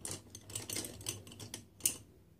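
Quick light clicks and clatter of makeup brushes and small items being picked through, with one sharper click just before the end.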